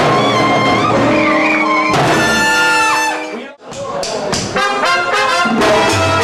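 Live salsa orchestra playing, with its horn section of trumpets, trombone and alto saxophone holding notes over percussion. The music cuts off abruptly about three and a half seconds in, almost to silence, then comes back with short, repeated horn notes.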